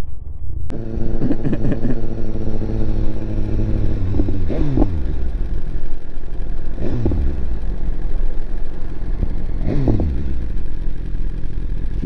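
2018 BMW S1000RR's inline-four engine running steadily at low revs, then pulling away with the revs rising and falling three times.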